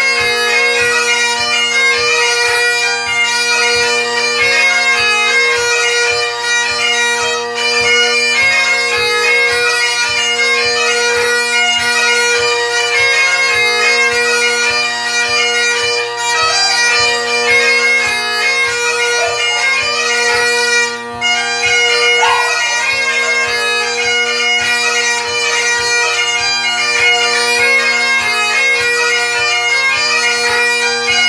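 Great Highland bagpipe playing a jig: a quick chanter melody over the steady hum of the drones.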